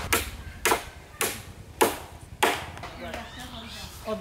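Hammer driving a nail through a wooden plank into a bamboo post: five sharp blows, about one every 0.6 s. A man's voice follows near the end.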